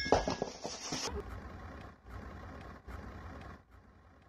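Metal objects clattering and ringing as they hit a concrete floor, dying away over about the first second. It is followed by a steady low rumble that stops shortly before the end.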